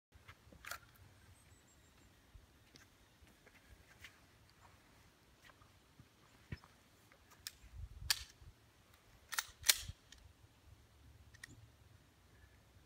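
Scattered faint, sharp clicks of a semi-automatic pistol being handled, with two close together about nine and a half seconds in. None of them is a shot.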